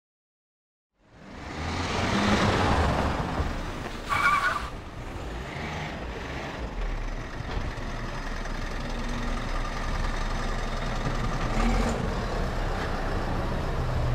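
A small van's engine running as it drives up and idles on a wet street, with tyre noise swelling early on. A short high beep sounds about four seconds in.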